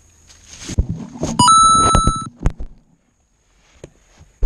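FPV quadcopter falling out of a tree, heard through its onboard camera: leaves rustling and several hard knocks as it drops through the branches. About a second and a half in, a short lower beep steps up into a higher electronic beep that holds for nearly a second.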